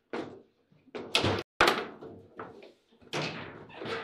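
A foosball table in play: sharp knocks and slams as the ball is struck by the players and the rods knock against the table. The two loudest hits come close together about a second and a half in.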